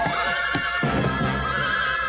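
Background cartoon score music with a horse whinnying over it, a wavering high cry heard twice.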